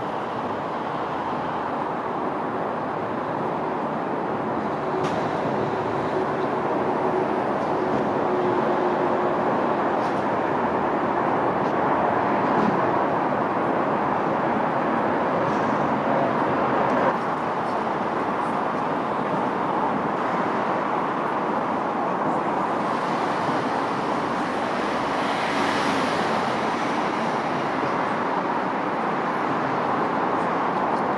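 Steady road traffic noise, an even rush of passing vehicles with no single engine standing out.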